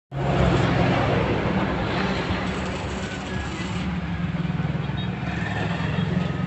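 Swaraj 963 FE tractor's three-cylinder diesel engine running steadily.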